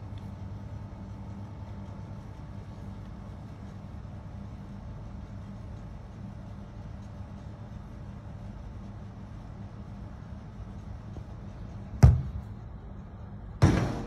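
Steady low mains hum of air-conditioner outdoor units running. Near the end comes the sharp thud of a football being kicked, then a second loud impact about a second and a half later as the ball strikes something.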